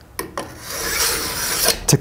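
Oregon guide bar rail dresser's file scraping along the rail of a steel Stihl Rollomatic ES chainsaw guide bar, filing off the mushroomed burr on the worn rail edge. A couple of light clicks as the tool is set on the bar are followed by a filing stroke lasting over a second.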